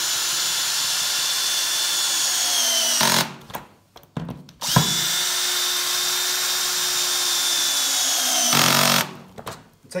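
Cordless drill with a socket driving down the nuts on a bolted conveyor-belt repair clip, in two runs of about three and four seconds. The motor whine dips in pitch at the end of each run as the nut tightens, with a few short clicks in between.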